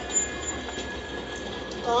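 Steam locomotive whistle of BR Standard Class 7 No. 70000 Britannia, one long steady blast held for nearly two seconds and cutting off just before the end. It is heard through a television speaker.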